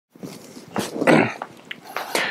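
Footsteps of a person walking in, a few light knocks, with a short louder rasping noise about a second in.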